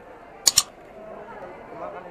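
A sharp double mouse-click sound effect from an animated subscribe-button overlay, once about half a second in, over the steady chatter of a crowded market.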